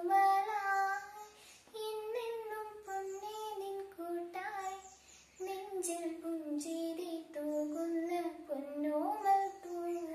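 A young woman singing solo without accompaniment. She holds long notes with slow pitch bends and breaks briefly for breath twice.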